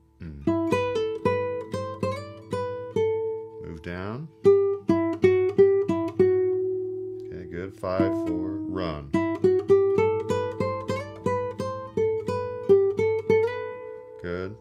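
Nylon-string flamenco guitar playing a slow single-note solo melody, fingerpicked notes following one another steadily, some held and some in quick runs.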